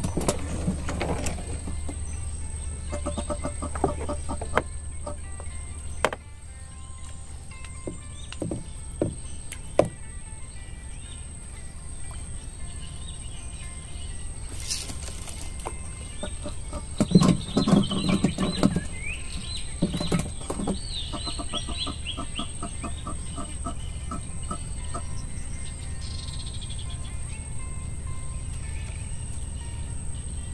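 Birds calling from the riverside trees: rapid trains of repeated clucking calls, about ten a second, around three seconds in and again past twenty seconds, with chirps in between. Under them run a steady low hum and a constant high tone. A louder, lower sound comes at about seventeen seconds, and a few sharp knocks are heard.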